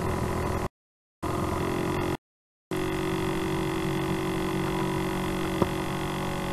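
Steady electrical hum in the recording, a buzz of several even tones. It cuts out to dead silence twice for about half a second in the first three seconds, and there is a faint click near the end.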